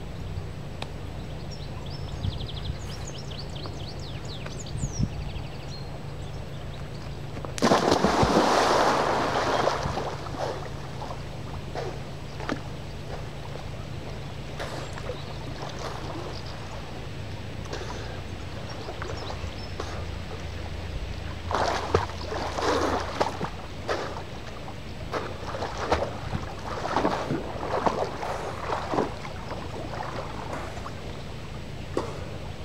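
A big splash as a person drops into a river, lasting about two seconds, a quarter of the way in. Near the end, repeated shorter splashes as the swimmer's arms and body move through the water.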